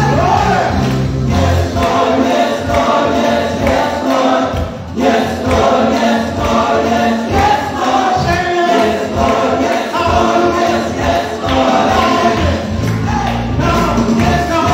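Gospel worship song: a group of voices singing together over music with a steady bass line.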